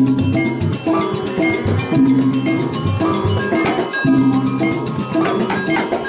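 Balinese gamelan accompanying a dance: struck metallophones ringing in a repeating pattern over drums, with a few sharp strikes.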